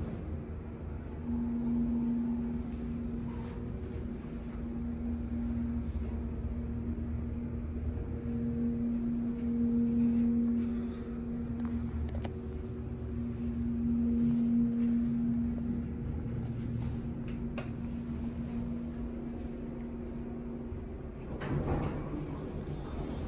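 1992 Schindler hydraulic elevator's pump motor humming with one steady low tone that swells and fades in loudness as the car travels up, over a low rumble. The hum stops shortly before the end.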